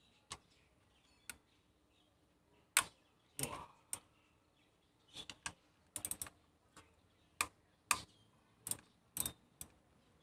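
Irregular sharp clicks and taps from a hand driver working loose the 10 mm bolt that holds an ignition coil on top of the engine, a few of them coming in quick clusters.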